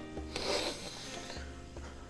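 A person taking one long sniff, about a second, of a new sneaker held to the nose, over soft background guitar music.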